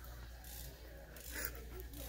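Quiet large-store background: a steady low hum with faint rubbing noise, and a brief soft hiss about a second and a half in.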